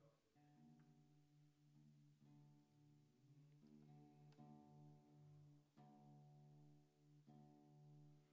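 Nylon-string acoustic guitar being retuned to drop D: single strings plucked softly one after another, each note ringing on while the tuning peg is turned. The notes are faint.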